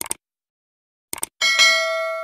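Subscribe-button sound effect: a quick pair of mouse clicks, another pair about a second later, then a bright notification bell ding that rings on and slowly fades.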